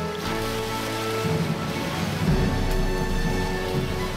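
Shallow water splashing and sloshing as a person wades through it, over baroque string ensemble music.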